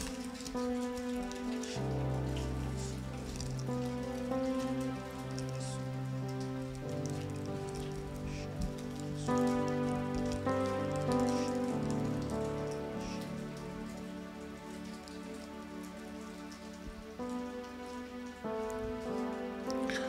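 Soft background music of sustained chords that change slowly every few seconds, with no melody standing out.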